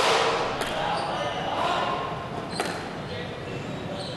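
Squash ball being struck by rackets and hitting the court walls during a rally: three sharp strikes, each echoing, the first and loudest at the start, another just over half a second later and a third past the halfway point.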